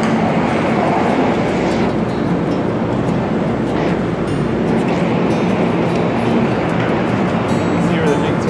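Loud, steady noise of a train-station platform beside a stopped passenger train: a dense rumble and hiss with voices of people on the platform mixed in.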